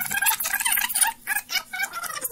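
Reel-to-reel tape being rewound on a studio tape editing deck, its recording heard at winding speed past the playback head as a fast, high-pitched chattering warble.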